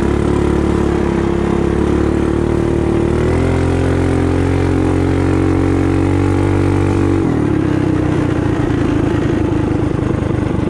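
Racing mini bike engine running hard, heard from on board the bike. Its pitch climbs about three seconds in, holds, then falls about seven seconds in.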